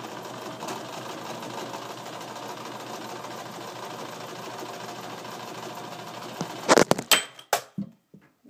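A domestic electric sewing machine runs steadily, stitching. Near the end there is a short burst of loud clattering knocks as the phone filming falls over.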